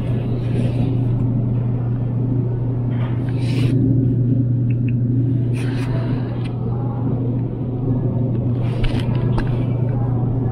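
Steady low hum of a refrigerated display case, with a few short rustles and knocks as egg cartons are handled and pulled from the shelf.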